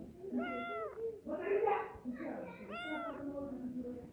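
Tabby cat meowing: two clear meows about two and a half seconds apart, each rising then falling in pitch, with a louder, rougher sound between them.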